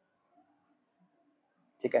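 Near silence with faint soft ticks of a stylus on a tablet screen as a word is handwritten, then a man's voice briefly at the very end.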